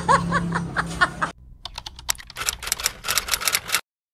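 A woman laughs in the first second. From about a second and a half in comes a rapid run of keyboard typing clicks lasting around two seconds: a typing sound effect that goes with the logo text being spelled out.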